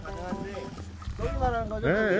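People's voices talking, with a loud, drawn-out wavering exclamation near the end, over a low rumble.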